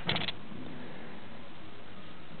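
Plastic felt-tip markers being handled: a quick clatter of four or five clicks at the start, like a cap coming off or markers knocking together, followed by steady background hiss.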